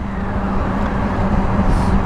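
Honda Africa Twin's parallel-twin engine running at a steady cruise, under the rush of wind and road noise from the moving motorcycle, growing slightly louder.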